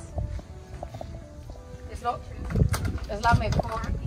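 People talking indistinctly, most clearly in the second half, over faint background music.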